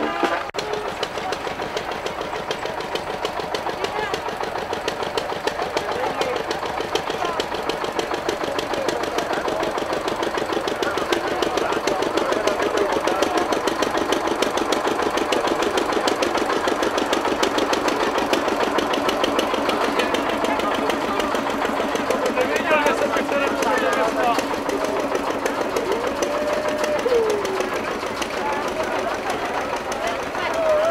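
A tractor engine running with a steady, rapid, even knock, mixed with the voices of a crowd talking.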